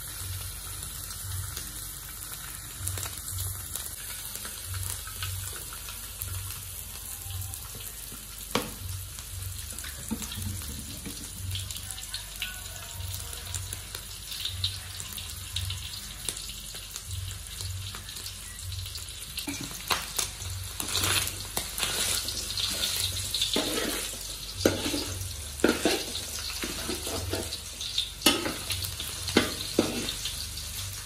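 Pork frying in oil in a steel wok, a steady sizzle. About two-thirds of the way through the sizzle grows louder, and a metal ladle scrapes and knocks against the wok as the food is stirred.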